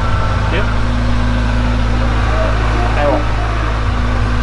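A loud, steady low mechanical hum that does not change, like a motor running, with a voice quietly saying 'tenang' twice over it.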